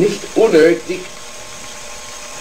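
A man's voice says a short word or two, then there is a pause of about a second with only faint, steady background noise from the hall recording.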